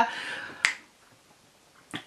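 A breath trailing off after speech, then a single sharp click about half a second in, then near silence.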